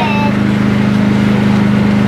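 A steady low hum under an even hiss of background noise; a voice trails off at the very start.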